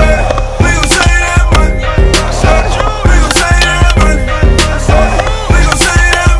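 Hip-hop beat without vocals, with a steady drum pattern, over skateboard sounds: urethane wheels rolling on concrete and the board clacking and hitting the ground.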